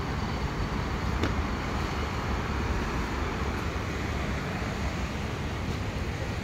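Steady low background noise of a crowded exhibition tent, with one faint click about a second in.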